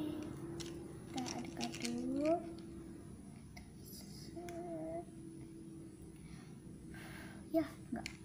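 Quiet, murmured voice sounds with a few small clicks and taps as a plastic bubble wand is dipped and worked in a plastic cup of bubble solution.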